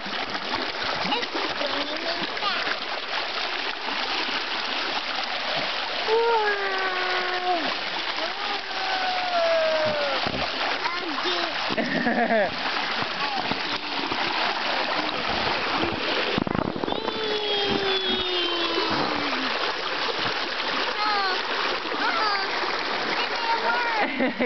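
Creek water flowing steadily over rocks and a little waterfall, with splashing around an inflatable float. A voice comes in now and then over the water, without clear words.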